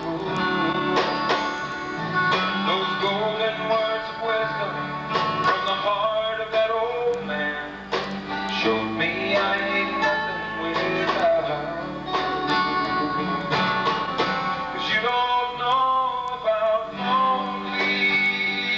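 Live country music from a small band, acoustic and electric guitars carrying a passage without clear lyrics.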